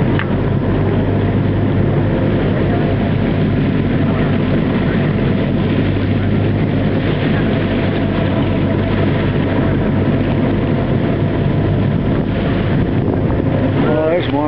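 Whale-watching boat's engine running steadily: a constant low drone under an even rushing noise of wind and water.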